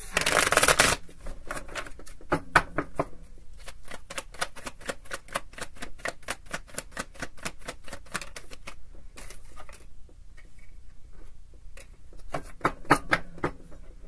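A tarot deck being shuffled by hand: a dense burst of card noise at the start, then a fast run of crisp card flicks, about five a second, that thins out after several seconds. A short flurry of card sounds comes again near the end.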